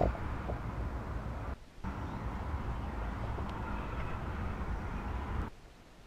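Steady, muffled rushing noise with a low rumble, as a camera held under water in a shallow creek picks up the flowing water. It drops out briefly about one and a half seconds in and fades out near the end.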